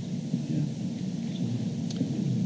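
Low, steady rumbling room noise of a large meeting hall picked up by the PA microphones, with a faint click near the end.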